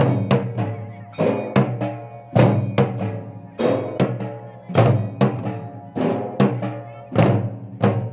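Dhol drums beaten in a steady, driving rhythm: deep, ringing strikes about two to three a second, some hit harder than others.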